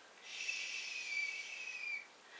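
A woman making one long shushing "shhh" to hush someone to sleep, starting about a quarter second in and running nearly two seconds, with a faint whistle in it.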